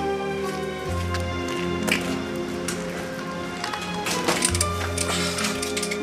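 Background music of sustained chords over a bass line that changes notes twice, with a few faint clicks.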